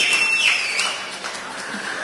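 A pause in a man's speech over a public-address microphone: the last words die away, with a brief thin high tone near the start, into a steady background hiss of the open venue.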